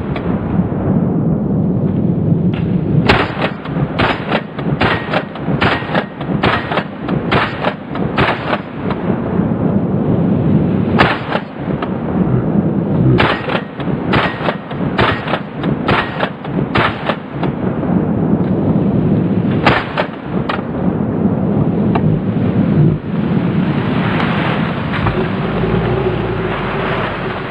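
Arsenal SAM7 SF, a semi-automatic AK-pattern rifle in 7.62×39mm, firing strings of rapid shots at about two a second, with short pauses between strings. A rolling rumble fills the gaps between the shots.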